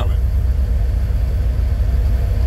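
Steady low rumble of a car's running engine, heard inside the cabin.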